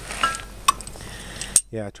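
Three light metallic clinks as the brass valve knob, regulators and torch fittings of an oxy-acetylene torch set are handled and knock together.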